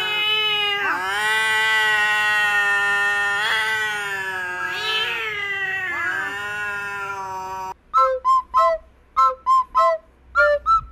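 A long-haired white cat yowling at another cat, one long, steady, held cry with brief dips in pitch every second or so: a warning yowl. It cuts off suddenly near the end and gives way to short whistled notes, about three a second.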